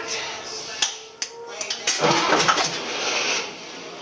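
Starter motor cranking a naturally aspirated Cummins 5.9 diesel on its first start attempt, after a couple of sharp clicks, turning over unevenly from about a second and a half in until near the end.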